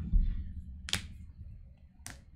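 A low thump at the start, then two sharp clicks about a second apart, from computer input while code is being edited.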